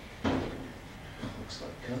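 A single sharp clunk at a top-loading washing machine as it is handled, about a quarter second in, followed by faint speech.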